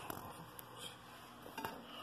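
A few faint, short clinks and knocks of a plate being handled at a microwave.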